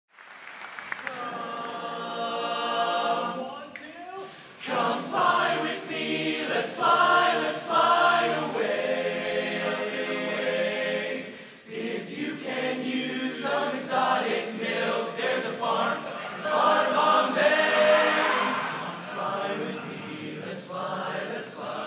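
Mixed-voice barbershop chorus singing a cappella in close four-part harmony, starting about a second in, with held chords in phrases broken by short pauses around four and twelve seconds in.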